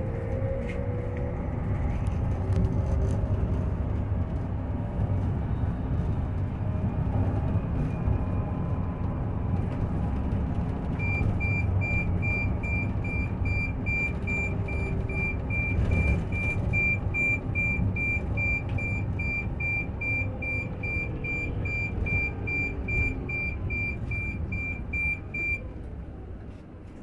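Cabin noise of an Olectra electric bus running along the road: a steady low rumble of tyres and road. About eleven seconds in, a high electronic beep starts repeating rapidly and evenly, and it keeps on until just before the end, when the rumble also drops.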